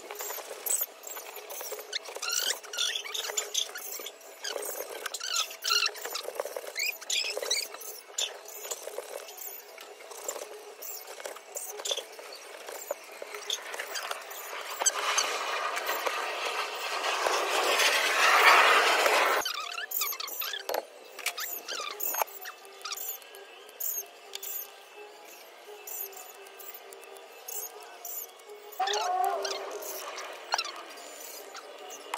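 A dull knife slicing pork belly on a plastic cutting board, with repeated short taps of the blade on the board. High squeaky chirps recur throughout. A rush of noise builds in the middle and cuts off suddenly.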